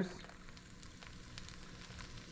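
Pickle juice poured from a glass pickle jar onto cut alligator meat in a plastic container: a faint, steady pouring and splashing.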